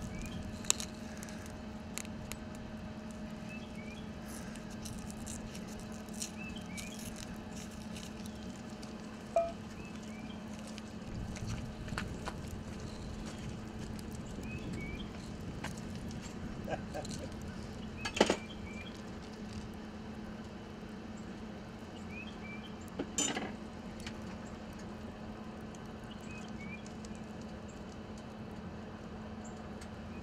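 Butter starting to melt in a hot cast-iron skillet over a charcoal grill, with faint scattered crackling. A few sharp clicks and knocks stand out over a steady low hum.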